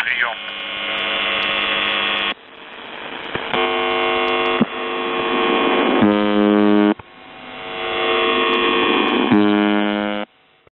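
The Buzzer (UVB-76) shortwave time-marker on 4625 kHz received over a radio: a coarse, steady buzzing tone. It drops out abruptly twice and swells back up gradually each time. Stronger, fuller buzzes come about six seconds in and again near the end.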